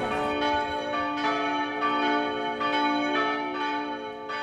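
Church bells ringing the call to midday prayer: several bells struck in turn, about two strikes a second, each tone ringing on under the next.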